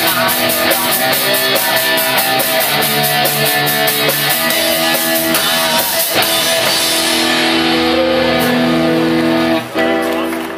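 Live rock band with electric guitar and drum kit playing a song. The cymbal beat stops about seven seconds in, leaving sustained guitar chords that briefly cut out just before the end.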